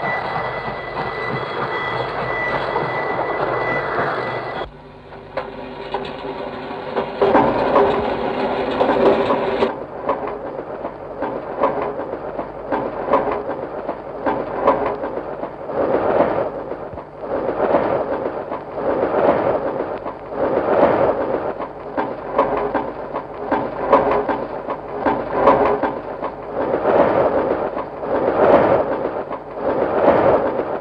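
Musique concrète built from recorded railway sounds. It opens with a sustained train-whistle tone, which drops away after about four seconds. From about ten seconds in, looped clattering train sounds repeat in a regular rhythm, roughly one pulse every second and a half: the exactly repeating opening of the exposition.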